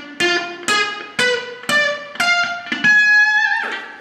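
Ernie Ball Music Man Silhouette electric guitar playing a diminished arpeggio: single picked notes climbing in minor-third steps, about two a second, ending on a higher note held for most of a second.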